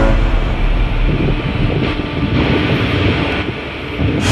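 Steady rushing wind noise on the microphone with a low rumble, on a ship's open deck; faint music sits underneath.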